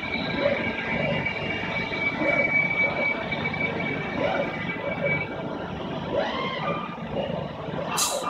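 AWEA LP4021 bridge-type CNC vertical machining center running, with a steady high whine over machine and shop noise; the whine stops about five seconds in.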